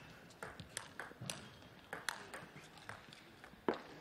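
Table tennis rally: the celluloid ball clicking off the rubber of the bats and bouncing on the table, a sharp click every third to half second, with a louder knock near the end as the point finishes.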